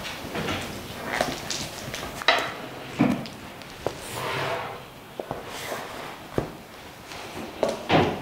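Handling noise as a fondant-covered cake on its board is lifted and flipped over: scattered knocks and clicks of board and tools on the worktop, with a brief swish about halfway through.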